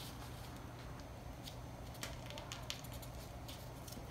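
Faint handling sounds of a plastic ruler and marker on pattern paper over a plastic table sheet: a few light ticks and scratches.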